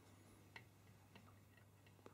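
Near silence, with two faint, short clicks from a hand handling soft watercooling tubing at a compression fitting.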